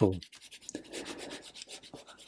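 Soft 5B graphite pencil shading on paper: a faint, quick run of scratchy pencil strokes across the sheet.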